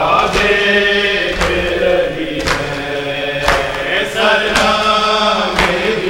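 Men's voices chanting a Urdu noha lament, with a sharp chest-beating slap (maatam) landing about once a second, six times, in steady time with the chant.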